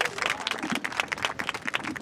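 A crowd applauding: many hands clapping in a dense, irregular patter, with a few voices faintly underneath.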